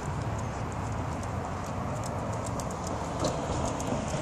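Night street ambience: a steady low rumble of distant traffic with light, irregular ticks and clicks.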